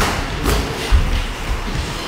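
Boxing gloves thudding as punches land during sparring: three blows about half a second apart in the first second, over background music.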